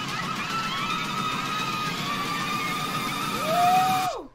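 Film trailer soundtrack: steady high held notes over a dense, noisy bed of sound, with a single rising note near the end, cutting off sharply just after.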